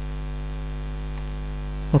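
Steady electrical mains hum with a low buzz, one constant tone and its overtones.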